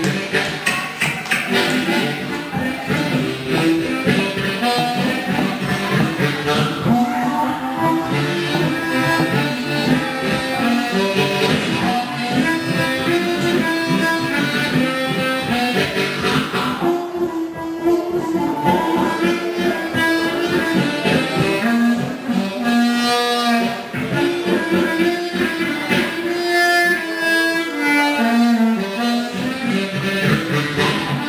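Amplified blues harmonica cupped together with a handheld microphone, playing a solo of held and bent notes with warbling shakes near the middle and toward the end, over a live blues band.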